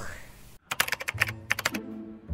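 A quick run of sharp, typing-like clicks, about a dozen in just over a second. Low music notes come in under them partway through.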